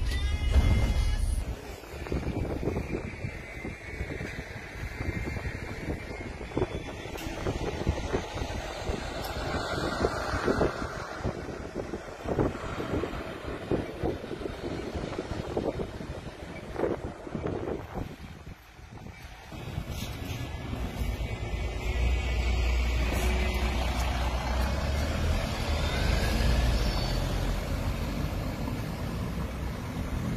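City bus running along a street, heard from inside the cabin: a low engine and road rumble with frequent rattles and knocks, the rumble growing stronger in the last third.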